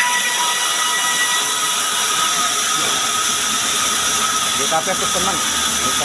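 Large sawmill band saw running steadily with a loud hissing whine as a log is pushed into the blade. A man's voice comes in near the end.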